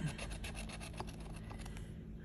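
A bottle opener scraping the coating off a scratch-off lottery ticket in rapid short strokes.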